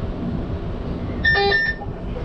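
A short electronic beep, about half a second long, roughly a second and a quarter in, over the low steady rumble of an electric train standing at a platform.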